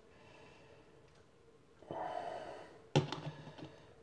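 Mostly near silence, broken by a short soft breath-like sound about two seconds in and a single sharp click about a second later.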